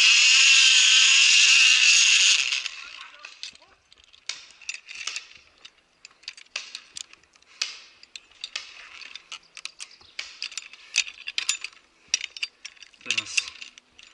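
Zipline pulley running along a steel cable: a loud whirring hiss for about two and a half seconds that fades out. Then come scattered metallic clinks and rattles of carabiners and pulley on the safety cable.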